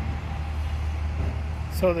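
Steady low outdoor rumble of road traffic, with a man starting to speak near the end.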